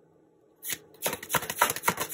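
A tarot deck being shuffled by hand. After a quiet start there is a brief rustle, then from about a second in a quick run of papery card flicks and snaps.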